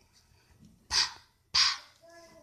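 Two short breathy puffs of the voiceless /p/ sound spoken on its own, bursts of air with no vowel after them, about two-thirds of a second apart.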